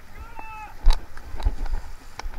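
A short high-pitched voice calling out, then several splashes and thumps of someone wading through a shallow stony river, the loudest about a second in.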